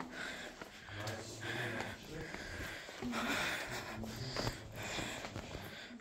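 Soft breathing and sniffing close to the phone's microphone, in slow swells, with faint voices in the background.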